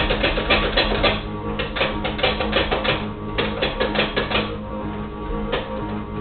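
A beet being sliced on a mandoline, pushed quickly back and forth across the blade, about four to five strokes a second. The strokes pause for about a second, four and a half seconds in, then start again.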